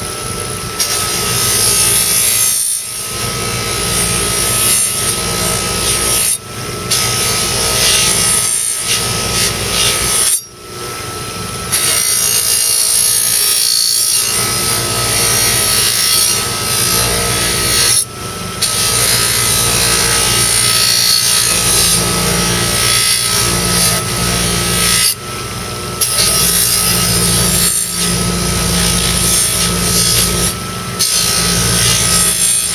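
Baldor bench buffer motor running with a steady whine while a knife is pressed against its spinning buffing wheel, giving a loud rushing rub. The rubbing breaks off briefly several times as the blade is lifted and put back to the wheel.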